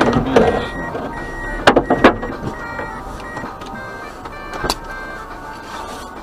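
Two sharp knocks about a third of a second apart, a couple of seconds in, and a fainter knock near the end, over the steady hum of a vehicle.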